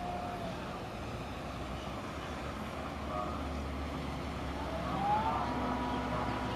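Low drone of a passing river cruise ship's engines. A steady whine glides up in pitch about five seconds in and then holds.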